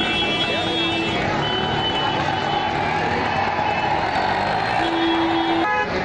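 Vehicle horns honking several times at different pitches, including a longer low honk near the end, over the loud babble of a large crowd and street traffic.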